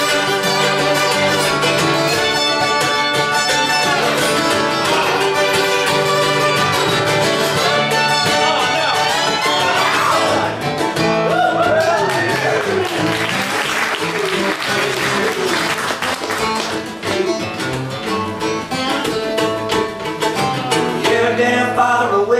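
Live acoustic country-rock band playing an instrumental break with no vocals, an acoustic guitar picked and strummed up front, with strings gliding in pitch about halfway through.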